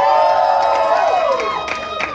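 Audience cheering and whooping in reply to the host: several voices holding high cries together, which thin out near the end.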